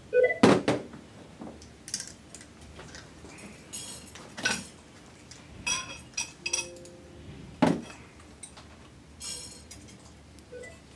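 Metal and glass parts of a small distillation column, copper plates, steel flanges and rods and a glass chimney, clinking and knocking together as they are handled. The knocks come singly and scattered, several with a short bright ring, the loudest about half a second in and again near the end.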